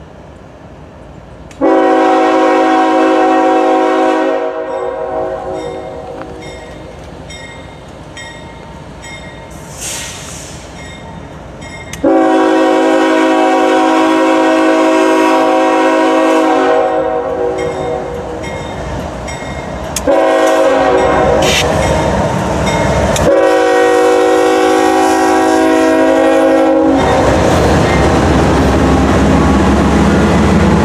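A CSX diesel locomotive's air horn blowing four long blasts as the train approaches; the last two blasts almost run together. After the final blast the locomotive's engine and the train rumble louder as it draws close.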